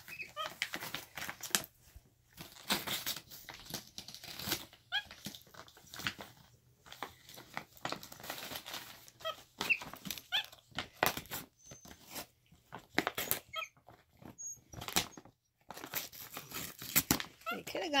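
Shiny plastic gift bag crinkling and rustling in quick irregular crackles as a capuchin monkey rummages inside it and shoves it about, with a few short high squeaks scattered through.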